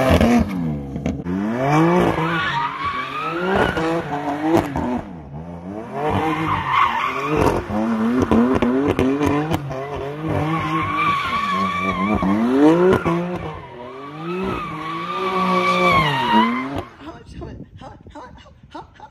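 BMW M4 Competition's twin-turbo straight-six revving up and falling back again and again as the car drifts, with the rear tyres squealing in long held notes. The sound stops about a second before the end.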